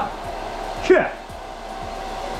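A hair dryer running steadily, a hiss with a thin steady whine under it, and a short falling vocal sound about a second in.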